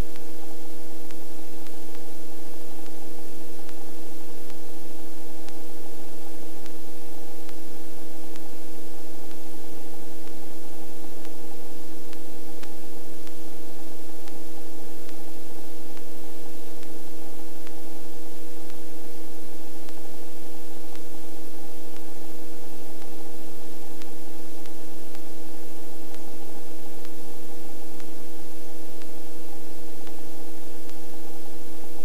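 Helicopter in low, slow flight, heard from inside the cockpit: a steady loud hiss with a constant whine of several tones, unchanging throughout.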